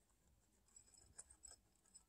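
Faint crunching of two guinea pigs chewing dry pellet feed, with a few small sharp clicks in the second half.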